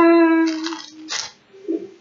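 A voice holding one steady sung note for about a second, then two short breathy hisses.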